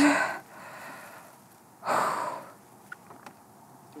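A cyclist breathing hard after an all-out time-trial effort: a heavy breath out at the start and a louder gasping exhale about two seconds in. Two faint clicks come near the end.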